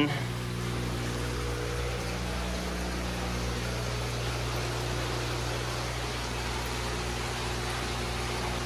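Steady electrical hum with an even hiss from the fish room's running equipment, such as the aquarium pumps and filtration. There is no change in level throughout.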